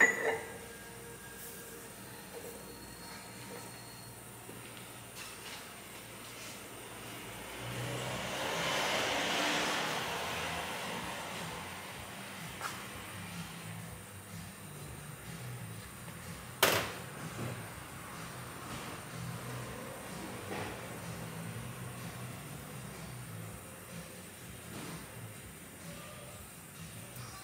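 Steel parts being handled on a hydraulic press bed: a metal clink at the start and one sharp metallic knock about seventeen seconds in, with a hiss that swells and fades between about eight and eleven seconds.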